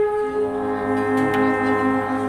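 An ensemble of alphorns playing long held notes together; about a quarter second in, the chord changes as a lower note comes in with a slight wavering pulse.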